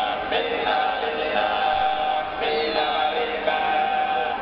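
Sardinian folk music played on a reed instrument: long held notes, rich in overtones, that step from one pitch to the next without a break.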